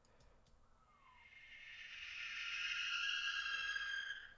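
Cinematic sound-design drone effect: after about a second of near silence, a high, ringing cluster of steady tones fades in and swells gradually louder.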